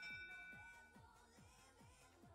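Faint background music with a steady beat. A high electronic tone, the match-field signal for the end of the autonomous period, rings on and fades out in the first second.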